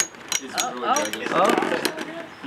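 Metal Beyblade tops spinning and clashing in a plastic stadium: a quick, irregular run of sharp metallic clicks as they strike each other.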